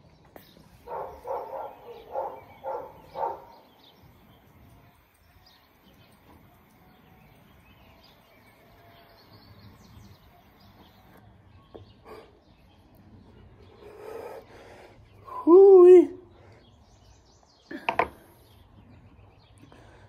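A long hit from a disposable vape pen: a few short puffing sounds at the start, several seconds of low background while the hit is held, then a breathy exhale. Near the end comes the loudest sound, a short voiced sound that bends up and down in pitch, followed by a sharp click.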